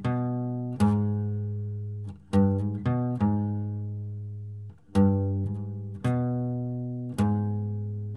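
Steel-string acoustic guitar played one picked note at a time on the low E and A strings, a slow country-style lick in E. Each note is left to ring and fade before the next, about one a second.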